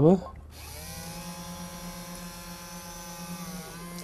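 Small gear motors of a USB-controlled kit robot arm running as it plays back a recorded sequence of movements: a steady whirring whine that starts about half a second in and dips slightly in pitch near the end.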